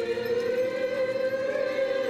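Liturgical singing of the Armenian church service: a long held note of choral chant, its pitch drifting slightly up and then back down.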